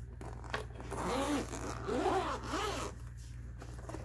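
Zipper of a fabric pencil case being unzipped, a rasping run of about two seconds that starts about a second in, its pitch rising and falling in a few strokes as the slider is pulled around the case.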